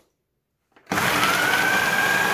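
Electric food processor motor starting up and blending frozen strawberries: silence, then about a second in it starts abruptly with a whine that rises and settles at a steady pitch as the blade gets up to speed.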